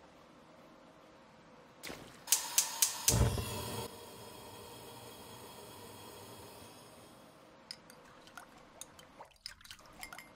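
Gas stove burner being lit: the igniter clicks about four times, the gas catches with a low whoosh, and the flame then hisses steadily for a few seconds. Near the end come a few light clinks of a spoon in the saucepan.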